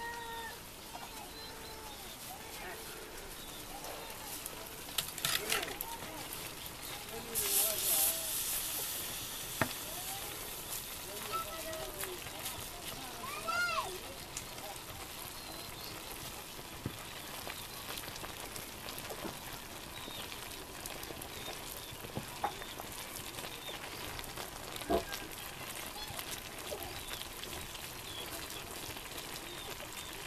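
Stinging nettle greens frying in a wok over a wood fire: a steady sizzle, with a louder hiss about seven to eight seconds in and a few sharp knocks of the stirring paddle against the pan. Faint voices in the background.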